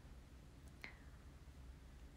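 Near silence: room tone with a faint low hum, broken by one short, faint click a little under a second in.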